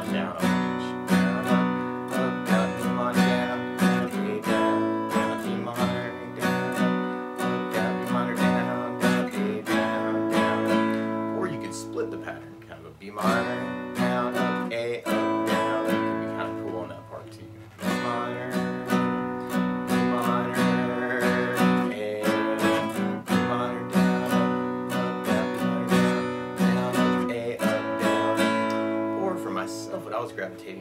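Acoustic guitar strummed in a steady down, down, up, up, down, up eighth-note pattern through the intro chord changes of B minor, E minor, F sharp and A. The strumming breaks off briefly twice partway through.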